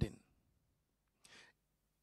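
A short breath drawn in through a handheld microphone by the male speaker in a pause, about a second after his last word trails off.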